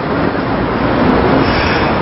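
Steady road-traffic noise, swelling a little early on as a vehicle goes by.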